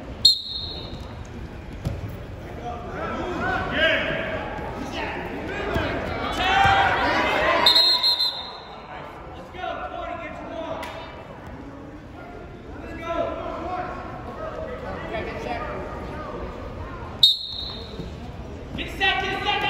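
Referee's whistle blowing three short blasts, near the start, about halfway and near the end, signalling the wrestling to start, stop and restart. In between, coaches and spectators shout in an echoing gym.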